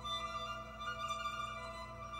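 Electric string quartet playing slow, sustained bowed notes, with a louder chord coming in right at the start and held through.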